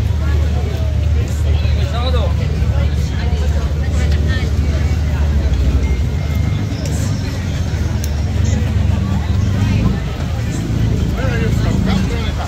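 Chatter of a dense crowd of many people talking at once, over a steady low engine drone.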